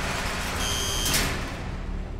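A high electronic buzzer tone lasting about half a second, cut off by a sharp click, over a low steady hum.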